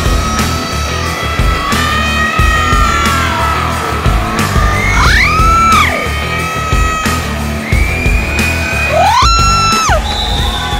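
Rock music with a lead guitar over a steady bass and beat, the guitar sliding up in pitch about halfway through and again near the end.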